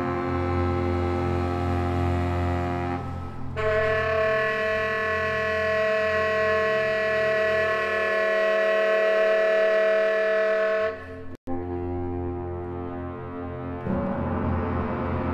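Baritone saxophone and orchestra holding long sustained notes over a low drone, the chord changing to a brighter, higher held note about three and a half seconds in. Near the end the sound drops out for an instant, then lower held notes return.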